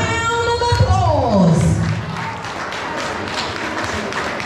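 A drawn-out call through the ring announcer's microphone, held for about a second and then falling in pitch. From about two seconds in, the crowd applauds, a dense patter of clapping hands.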